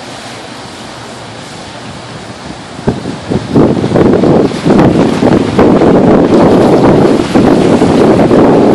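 Steady rush of water from the S.S. Badger's hull wash as the ferry passes close by, overwhelmed from about three seconds in by loud, gusty wind buffeting the microphone.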